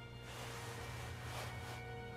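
Quiet film score of steady held tones, with a soft hissing noise that swells in about a quarter second in and fades out just before the end.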